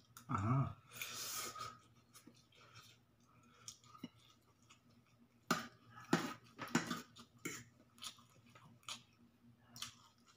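A person eating pancit canton noodles close to the microphone. Near the start there is a short hum and a hissing slurp as a forkful goes in. Then comes quiet chewing with several sharp clicks and smacks, the loudest a little past the middle.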